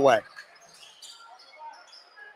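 Faint basketball game sound in a gymnasium: a ball bouncing on the hardwood court and scattered short squeaks, after a man's voice ends about a quarter second in.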